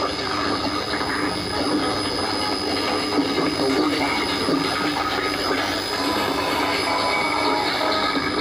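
Shortwave radio receiver tuned to a weak broadcast on 13775 kHz: steady static and hiss fill the sound, with the station's programme audio faint underneath and a thin steady high whistle.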